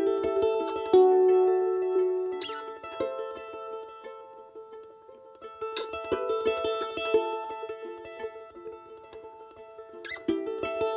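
Mandolin picking an instrumental introduction in single notes and ringing tones. The playing thins and fades through the middle, then picks up again about five and a half seconds in.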